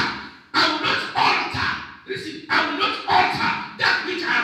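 A preacher's voice speaking loudly in short shouted phrases with brief pauses between them.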